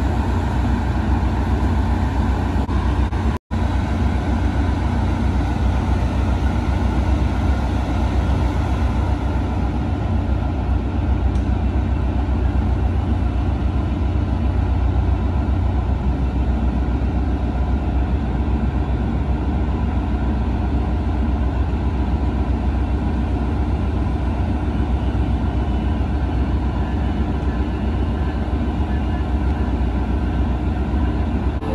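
Siemens Charger SC-44 diesel-electric locomotive running at a standstill, a steady low rumble with no change in pace. The sound cuts out for a split second about three and a half seconds in.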